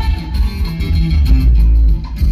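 Loud live norteño band music for dancing: plucked guitar over a heavy bass line.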